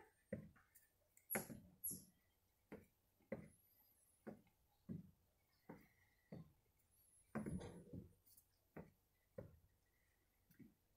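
Faint thumps of sneakers landing on a wooden deck during side-to-side skater hops, a steady beat of about three landings every two seconds.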